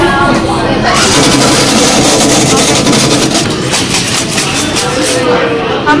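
Coin change machine paying out dollar coins, a rapid rattling run of coins dropping into its metal tray for about four seconds over a steady high whine.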